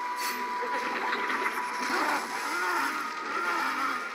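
The animated episode's soundtrack played back: a thin steady high tone that stops about two seconds in, then a voice with rising-and-falling pitch.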